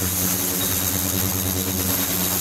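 Ultrasonic water tank in operation: a steady machine hum with a thin high whine above it.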